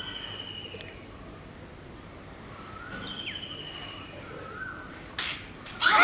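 Birds calling outdoors: a short whistled phrase repeated about every three seconds over steady background hiss. Near the end comes a sharp knock, then children's voices break in loudly.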